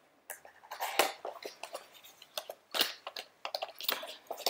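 Plastic shrink wrap being pulled and torn off a makeup palette by hand: irregular crinkling and crackling, with louder snaps about a second in and near three seconds.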